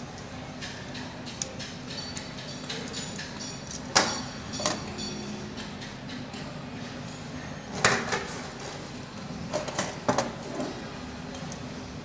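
Handling clicks and knocks from a screwdriver and plastic push-button switch blocks while wiring screw terminals: a sharp click about four seconds in and a few more around eight to ten seconds, over a steady low hum.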